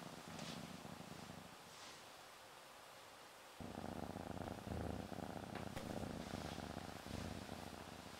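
Domestic cat purring softly under a hand massage, a low rhythmic pulsing that fades almost away for a couple of seconds and then comes back more strongly just past the middle.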